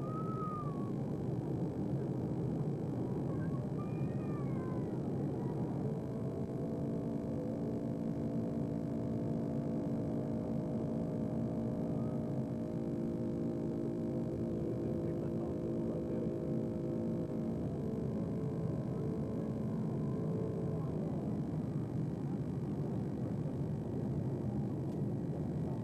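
Steady drone of an airliner cabin in flight. From about six seconds in until about three seconds before the end, several steady held tones sound over it.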